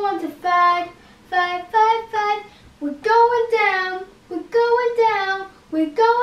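A young child singing a self-made song with no accompaniment, in short held phrases with brief breaths between them.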